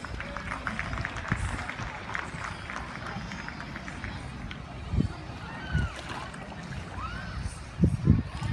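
Indistinct background voices over a steady noisy wash, with a couple of short chirp-like glides in the second half and a few soft low thumps.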